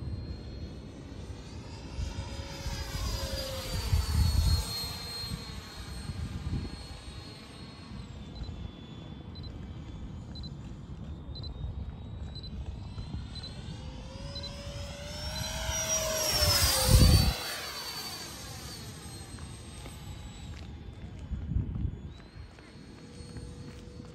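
Freewing T-33 model jet's 80mm electric ducted fan whining as the jet flies past. The whine swells and drops in pitch as the jet makes its closest pass about two-thirds of the way through.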